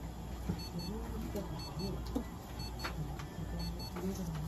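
Short, high electronic beeps repeating in pairs every second or so over a steady low hum, with faint voices in the background.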